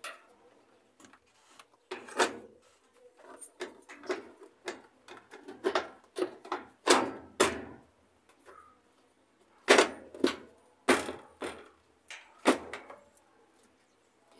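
Control console of a Whirlpool top-load washer being lowered and fitted shut onto the cabinet: a string of irregular knocks and clicks, the sharpest three coming in the second half.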